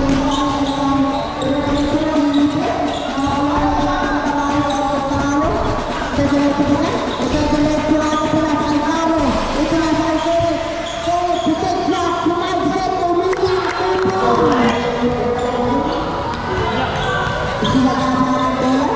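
A basketball being dribbled on a hard indoor court, the bounces echoing in a large hall, under continuous voices.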